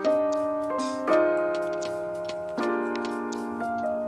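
Background music of sustained electronic keyboard chords that change every second or so, over a light ticking beat.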